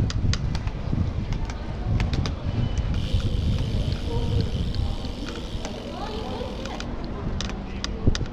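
Riding sounds from a road bicycle: a continuous low rumble of wind on the microphone and tyres on paving, with scattered sharp clicks and rattles from the bike.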